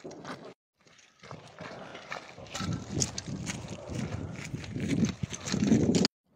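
Footsteps crunching over broken rubble and debris, with short, irregular knocks that grow louder toward the end. There is a brief drop-out about half a second in.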